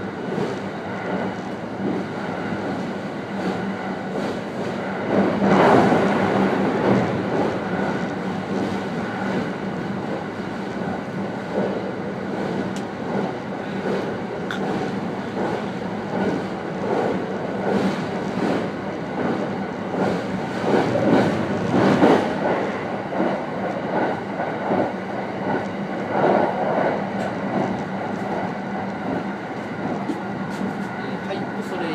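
Marine Liner electric train running at speed over the Seto-Ohashi Bridge's steel truss deck, heard from the front cab: a steady rumble of wheels on rail with a constant low hum and a scatter of clacks. The noise swells louder twice, about five seconds in and again around twenty-one seconds.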